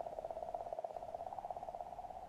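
A faint, steady droning tone with a fast flutter, part of the soundtrack of a played video during a pause in its narration.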